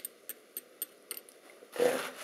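About five light, sharp ticks, roughly three a second, as a fountain pen is handled against a glass ink bottle during filling. A voice starts near the end.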